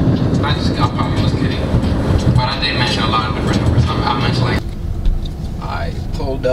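Steady road and engine noise inside a car cabin at freeway speed, with faint voices over it. About two-thirds of the way through, it cuts off suddenly to a quieter car interior as a voice begins.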